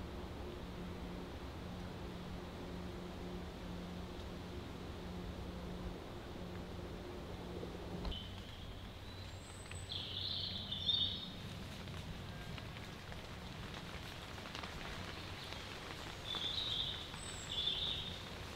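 Quiet woodland ambience: a faint steady hiss, with a low steady hum for roughly the first half that then stops, and a few short high chirps around the middle and again near the end.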